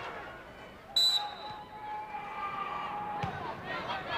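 A referee's whistle blows once, short and shrill, about a second in, the signal for the next serve, over the noise of an arena crowd. Near the end comes a single thump.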